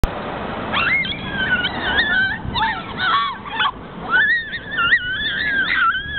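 High-pitched squeals and shrieks from people rolling down a grassy hill. The long, wavering cries start under a second in and follow one another.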